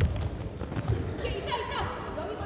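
A jokgu ball struck once right at the start, a single sharp thud, with faint voices in the hall behind it.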